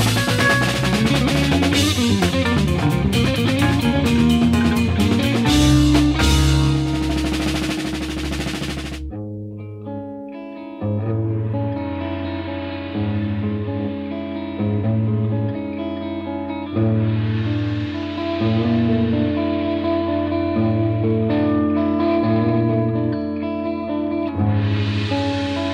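1970s jazz-fusion band recording: a full band with drum kit, cymbals and guitar plays loudly, then about nine seconds in the drums and cymbals drop out, leaving held chords over a pulsing bass line.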